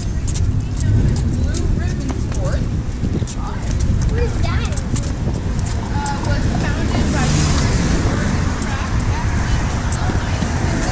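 Street sound while walking a downtown sidewalk: car traffic with a steady low rumble, indistinct voices, and short taps like footsteps.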